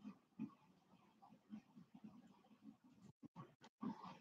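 Near silence: room tone with a few faint, brief soft sounds.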